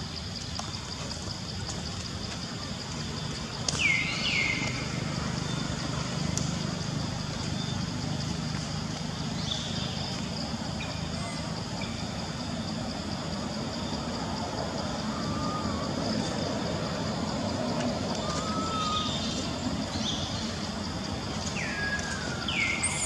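Steady outdoor background noise with a low hum and a high, even drone. A few short, high calls slide downward in pitch about four seconds in, and two small wavering calls come later.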